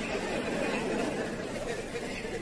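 Faint, indistinct murmur of voices: background ambience with no clear words.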